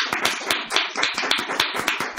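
A small audience applauding: a steady run of many hand claps.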